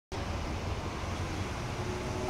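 Steady low rumble of outdoor background noise, with a faint steady hum above it.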